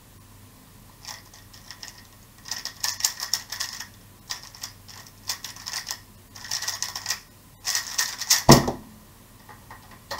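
Rapid clusters of clicking layer turns from a MoFang JiaoShi MF3RS M 2020 magnetic 3x3 speedcube being solved at speed for about eight seconds. It ends in one loud thump as the hands slap down on the timer to stop the solve.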